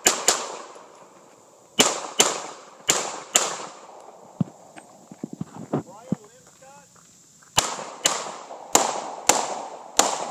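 Pistol shots fired in quick pairs about half a second apart, each echoing briefly: a single shot at the start, two pairs in the first few seconds, a pause of about four seconds while the shooter moves between positions, then two more pairs near the end.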